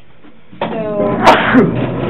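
A person coughing just after a spoken word: one loud, sharp cough a little over a second in, followed by a smaller one.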